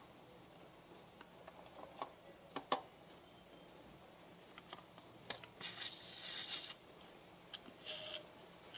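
Quiet handling sounds of gloved hands working over a plastic tray: scattered light clicks and taps, the sharpest about three seconds in, and a brief hissing rustle about six seconds in.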